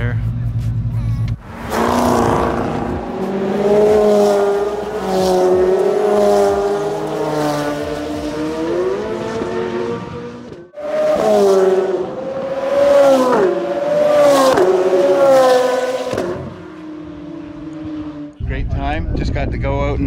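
Performance car engines accelerating out of the pit lane onto the track, the pitch climbing and dropping through gear changes as the cars pull away. There is a break about halfway through, then more climbing and falling engine notes, and near the end a quieter engine drone that slowly falls in pitch.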